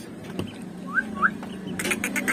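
Duckling peeping: two short rising chirps about a second in, over a steady low hum, with a few sharp clicks near the end.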